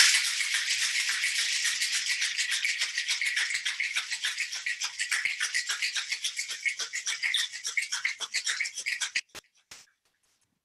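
Ice rattling inside a two-piece metal cocktail shaker shaken hard, a fast, even rattle that chills and dilutes the drink. The shaking stops about nine seconds in, followed by two short clicks.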